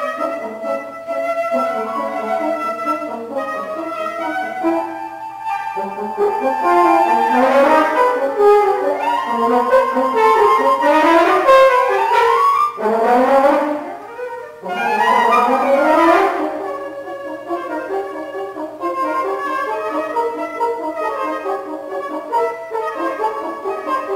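A flute and a French horn playing a contemporary duet, with notes in both instruments throughout. The middle of the passage grows louder and is full of sweeping pitch slides up and down, broken by a short pause, before steadier notes return.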